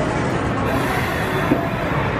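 JR Central 383 series 'Wide View Shinano' electric train moving along a station platform: a steady rumble of wheels and running gear on the rails, with a single click about one and a half seconds in.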